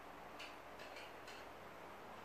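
Faint footsteps on a tiled floor: a few light, uneven clicks over quiet room tone.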